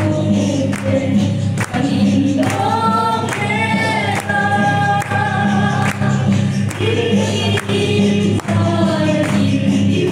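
A woman leading a Mizo gospel-style song into a microphone, with a group singing along and hands clapping on a steady beat about twice a second, over a sustained low accompaniment.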